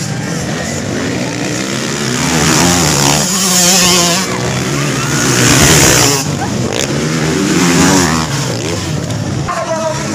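Motocross dirt bikes racing past one after another, their engines revving up and down, loudest in three swells through the middle.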